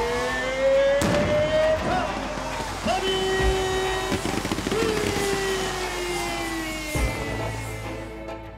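Game-day stadium sound as the team runs onto the field: a voice over the stadium loudspeakers holds long, drawn-out calls over crowd noise and music. The first call rises slowly and a later one falls. Two sharp bangs come about a second in and near the end.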